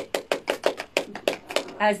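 A few people clapping their hands, quick claps about six a second, stopping shortly before the end.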